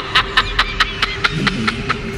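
A person laughing in a quick run of short pulses, about five a second, that trails off over a steady hum.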